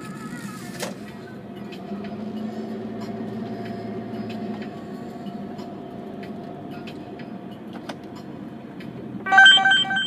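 Steady engine and tyre noise inside a taxi's cabin while driving. About nine seconds in, a loud run of electronic beeps from the taxi's booking terminal signals an incoming job.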